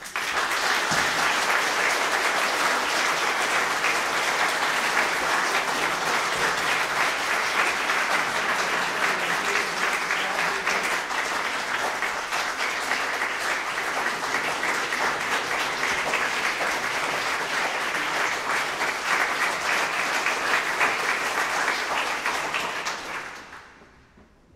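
Audience applauding, a dense steady clatter of many hands that dies away near the end.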